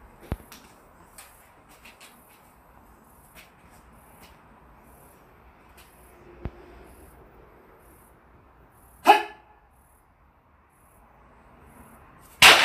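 Mostly quiet room tone with a few faint clicks, broken by one short, loud voice-like sound about nine seconds in.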